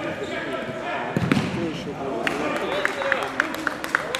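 Sounds of an indoor futsal game: the ball being kicked and bouncing, with a heavy thud about a second in. Short squeaks from players' shoes on the wooden court come several times in the second half, and players' voices call out across the hall.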